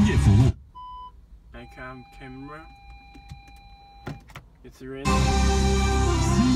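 FM radio broadcast, music and a talking voice, playing through a Joying Android car head unit. About half a second in it cuts out to a much quieter stretch with a short beep and a faint voice, then comes back loud about five seconds in.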